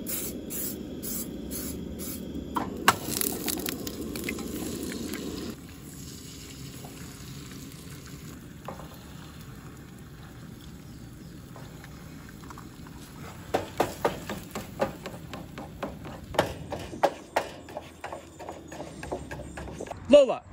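Canola oil sprayed from an aerosol can onto a frying pan, in short hissing bursts at the start. A steadier sound follows and stops abruptly about five and a half seconds in. In the second half comes a run of sharp clicks and taps.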